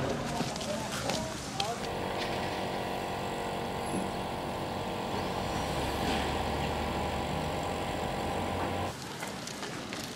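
A vehicle engine running steadily with an even, unchanging hum, starting about two seconds in and cutting off abruptly about a second before the end.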